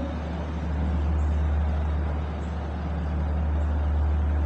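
Steady low hum over a constant background hiss, with faint strokes of a marker on a whiteboard about once a second.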